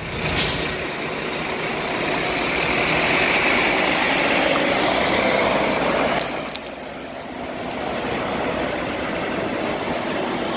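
Prevost X3-45 express coach driving past close by and moving off, its diesel engine and tyres making a steady rushing noise. It gets louder over the first few seconds and falls away suddenly about six and a half seconds in, then carries on lower.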